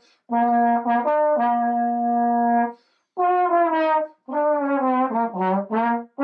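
Unaccompanied slide trombone playing a slow melody: one long held note of about two and a half seconds, then two shorter phrases that step downward into a low note, with brief gaps between phrases.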